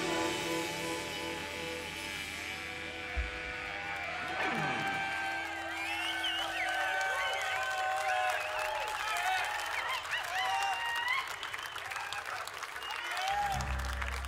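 A rock band's last sustained chord rings out and dies away, with a downward swoop about four seconds in. A festival crowd then cheers and applauds.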